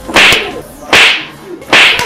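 Three loud slaps land on a man's head, about three-quarters of a second apart, each a sharp crack that dies away quickly.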